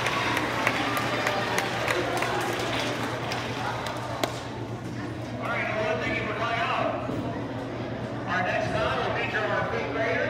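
Applause from an audience of children thinning out and dying away over the first four seconds, followed by the chatter of the crowd and voices talking.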